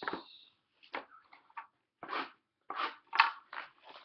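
Cardboard trading-card box being handled and opened: a run of short crinkling and scraping noises, the loudest about three seconds in.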